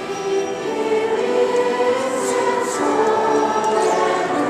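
Children's choir singing a hymn-like Christmas song, with held notes that change pitch every so often.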